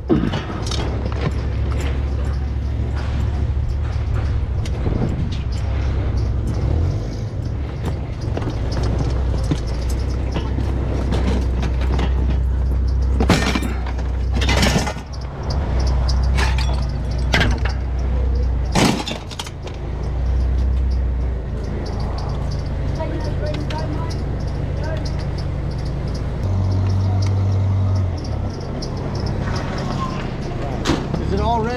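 A steady low engine rumble from a running vehicle or yard machine, with scattered knocks and clatters of scrap parts being handled. A few sharper impacts fall near the middle.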